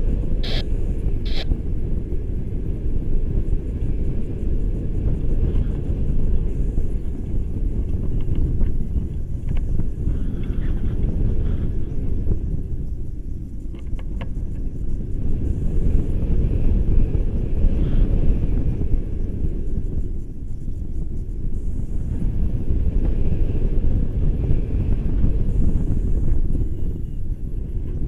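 Wind buffeting the microphone of an action camera carried through the air on a tandem paraglider: a steady, loud low rumble that swells and eases.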